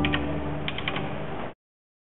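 Church organ's last chord dying away in the reverberant church, with a few sharp mechanical clicks: two near the start and a quick run of four about two-thirds of a second in. The sound cuts off abruptly about a second and a half in.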